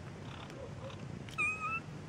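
A cat giving one short, high-pitched meow about a second and a half in.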